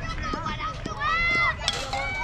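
Several voices shouting and calling out across a baseball field, long high-pitched calls, the loudest about a second in, with a few faint knocks.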